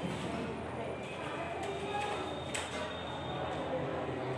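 Voices talking quietly, with one sharp click about two and a half seconds in.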